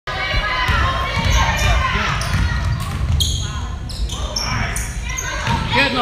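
Basketball game in an echoing gym: the ball bouncing on the hardwood floor, with players' and spectators' voices.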